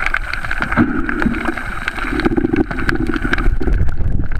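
Muffled underwater sound picked up by a camera held below the surface: a steady rushing noise with many small scattered clicks and knocks.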